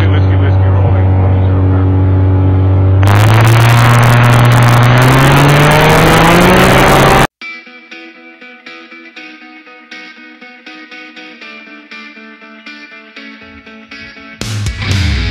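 Light aircraft engine and propeller heard in the cockpit, running up to takeoff power: a loud drone that grows louder about three seconds in and rises steadily in pitch. About seven seconds in it cuts off abruptly, and guitar-driven background music plays.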